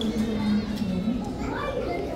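Indistinct voices of people talking, children's voices among them, in a busy exhibit hall.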